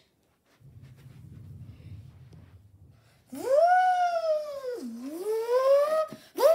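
A child's voice stretching out one long, wavering 'It's—', its pitch falling, dipping and climbing again, starting about three seconds in and running for almost three seconds. Before it comes a faint low rumble.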